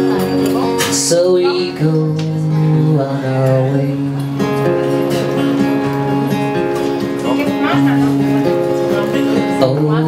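Acoustic guitar strummed and picked through a chord progression, the chords changing about every second, in an instrumental passage of a folk song.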